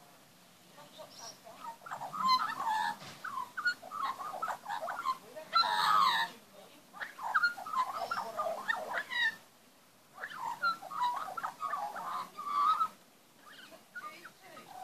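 Young Australian magpie singing: a run of varied warbling, gliding phrases that starts about a second in, breaks off briefly near ten seconds, then goes on again.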